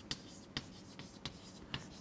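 Chalk writing on a blackboard: a faint run of small taps and scratches, one for each chalk stroke.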